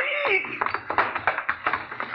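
Radio-drama sound effects of a fistfight: a short groan from the man who is hit, then a run of scattered knocks and thuds as he goes down.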